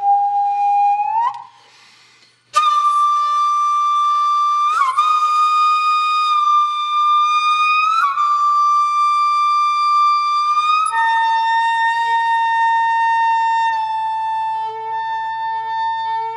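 Music: a single flute-like wind instrument playing a few long, slow held notes with brief sliding changes of pitch between them, pausing about two seconds in. A faint steady hum runs underneath.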